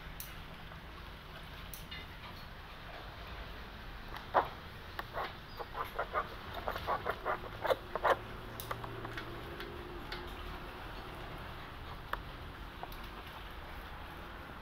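A quick run of about a dozen short, sharp clicks or taps over roughly four seconds, starting about four seconds in, over a faint steady background.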